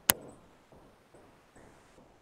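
A single sharp click just after the start, then near silence.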